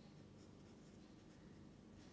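Near silence with a felt-tip marker faintly writing on paper.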